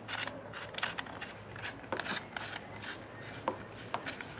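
Faint, irregular clicks and rubbing as the threaded fitting of a rubber air hose is screwed by hand into the air port on top of a portable cordless tire inflator.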